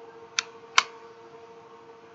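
Magnetic battery back cover of a Cloupor Mini box mod snapping onto the body: two sharp clicks in the first second, the second louder, from its strong magnets.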